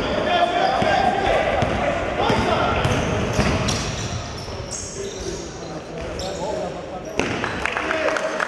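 Indistinct voices mixed with repeated knocks and clatter.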